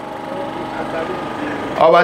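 A short pause in a man's amplified speech, filled by a steady mechanical hum in the background; his voice comes back in near the end.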